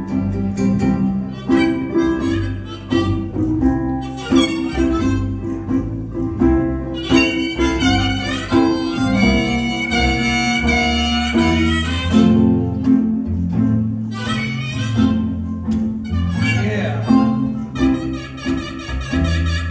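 Live acoustic blues in C: a harmonica plays lead, with long held notes in the middle, over a strummed ukulele and a plucked bass line.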